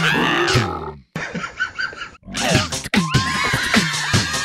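Cartoon bug characters shouting and whooping in wordless, animal-like voices. About three seconds in, upbeat music with a steady beat starts, and their whoops carry on over it.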